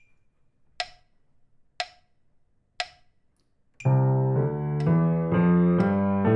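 A metronome at 60 beats per minute clicks once a second through the count-in. About four seconds in, a piano enters with both hands on a C major scale in eighth notes, two notes to each click. The scale climbs, and the metronome keeps clicking under it with a higher click on the downbeat.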